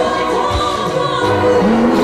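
Live gospel music: a woman singing lead into a microphone with choir voices, and a low drum hit about half a second in.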